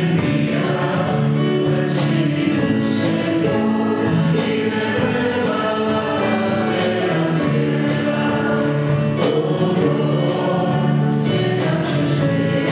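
Church choir singing a hymn in long, held notes, over a light steady beat.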